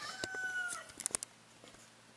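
A rooster crowing: the end of a long held call that drops slightly in pitch and stops just under a second in. A quick run of a few sharp clicks follows about a second in.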